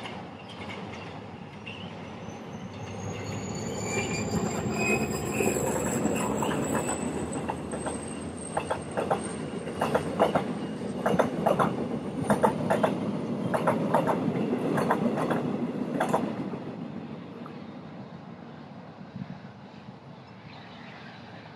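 Passenger coaches of a Korail diesel-hauled train rolling past on a curve: a thin, high wheel squeal slowly rising in pitch, then a run of sharp clacks as the wheels cross the track and points. The sound fades away over the last few seconds as the train leaves.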